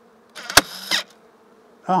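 A portable staple gun fires once, a single sharp snap about half a second in within a short burst of mechanism noise, shooting a half-inch staple into the wooden hive frame. Honey bees hum steadily underneath.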